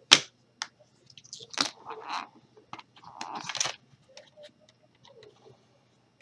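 Fingers prying at a small plastic eyeshadow palette still sealed in plastic wrap, which will not open. A sharp click comes just after the start, then short bouts of plastic scraping and crinkling, with scattered small ticks near the end.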